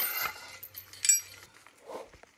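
Metal clinks from a chain-type wire fence stretcher being released from tensioned smooth fence wire: a sharp clink at the start and a second, ringing clink about a second in.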